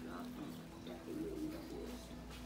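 Low, indistinct voice murmuring over a steady low hum.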